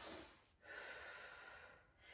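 Near silence with a woman's faint breathing: two soft breaths, the second longer, lasting about a second.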